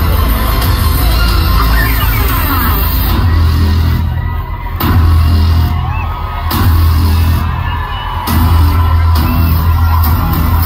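A loud live rock band playing through a concert PA, led by the drum kit and heavy bass, as heard from within the audience. The upper range dips and comes back in blocks of just under a second through the middle.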